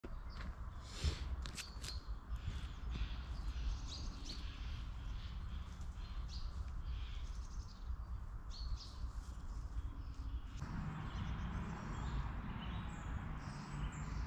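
Small woodland birds chirping, many short calls scattered throughout, over a steady low rumble of outdoor background noise.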